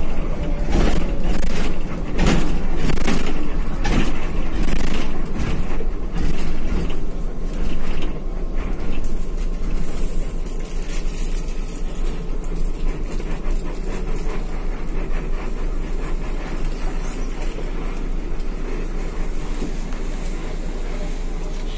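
Inside a coach bus cabin, engine and road noise as the bus slows into a toll plaza. There is a series of loud pulses about once a second for the first eight seconds, then steadier, somewhat quieter running.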